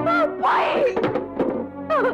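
Film soundtrack: background music under a comic scuffle, with several dull thuds and short shouted exclamations.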